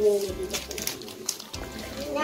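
Background music with gift-wrapping paper rustling and crinkling as a present is unwrapped by hand; a voice trails off right at the start.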